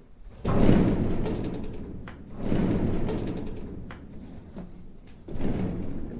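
A roped bull struggling against a wooden corral post: three loud, rough bursts of sound about two and a half seconds apart, each starting suddenly and fading over a second or so.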